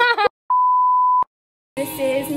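An edited-in beep sound effect: one steady high tone lasting under a second, with the sound track cut to dead silence before and after it.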